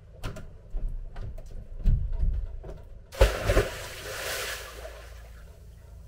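A few knocks and thuds of footsteps on the houseboat deck, then a person jumping into the lagoon with one loud splash a little over three seconds in, the spray hissing and fading over a second or so.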